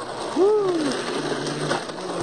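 Blendtec blender running on its smoothie cycle, its motor and blades grinding a cheeseburger, a soda can and canned beets into a slurry in a steady, noisy churn. About half a second in, a man's drawn-out "oh" rises and falls in pitch over it.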